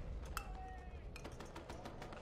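A low steady rumble of background ambience, with a quick run of faint sharp clicks and knocks in the second half.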